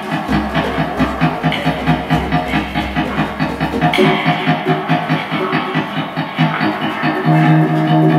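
Improvised experimental music played live: electric guitar and effects-processed electronics over a fast, even pulse. A low drone sounds through the first half, and held tones come in near the end.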